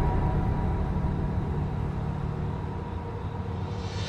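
Low rumbling drone of a suspense film score, slowly fading.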